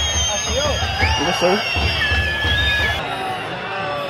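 Stadium crowd whistling in protest at time-wasting: several long, shrill whistles at different pitches overlap and change over a crowd murmur.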